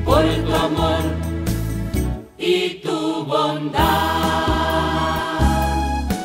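Voices singing a Catholic hymn over keyboard accompaniment and a steady bass, closing on a long held note from about four seconds in.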